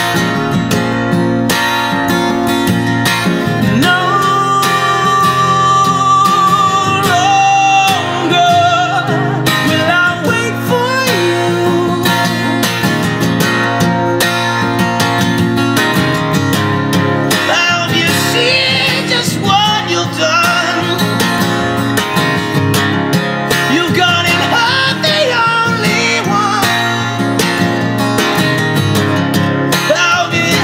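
Acoustic guitar strummed and picked in a steady rhythm through an instrumental passage of a live solo song.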